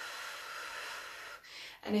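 A woman's long, audible breath, lasting about a second and a half, followed by a shorter, fainter breath just before she speaks again.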